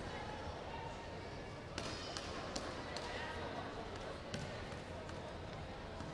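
Background chatter of people around a competition mat, with a quick run of four sharp knocks about two seconds in and a single knock past four seconds.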